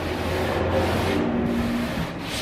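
A sponge sanding block rubbed back and forth over the top of a painted nightstand, a steady scratchy scrubbing. Low held notes of background music run under it.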